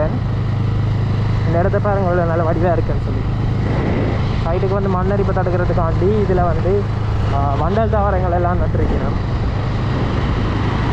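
Motorcycle engine running steadily at cruising speed, a continuous low hum while riding. A man talks over it in several stretches.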